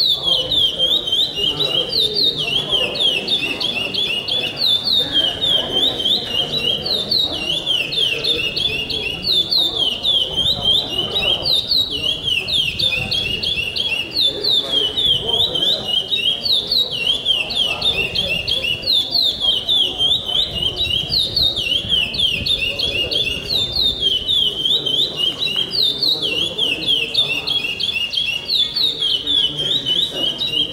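A caged brown ('pardo') songbird singing its pico-pico song, repeating the same phrase about every two seconds. Each phrase is a quick run of high, sharply falling notes.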